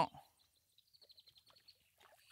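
A faint, high twittering bird call: a quick run of short notes that falls slightly in pitch, about half a second in.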